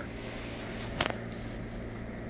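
Steady low hum of shop background noise, with one sharp click about a second in.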